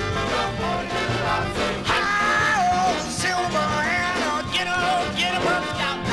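Upbeat early rock and roll record, a 45 rpm single, playing a stretch with a steady beat and a melody line but no sung lyrics.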